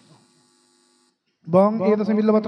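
Faint electrical hum, a brief dropout, then about one and a half seconds in a man's voice starts chanting a Sanskrit puja mantra, held on one steady pitch.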